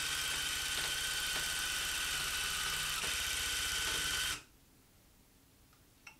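Handheld electric tufting gun running, its needle punching red yarn into the tufting cloth with a fast, even rattle under a steady whine. It stops abruptly about four seconds in.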